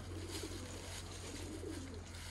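Dove cooing in low, wavering calls, with faint crinkling of a thin plastic shopping bag being opened.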